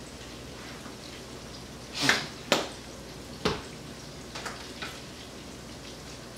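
Kitchen handling sounds while mayonnaise is squeezed onto a toasted bun and spread: a brief crackle about two seconds in, then a few sharp clicks, over a steady faint hiss.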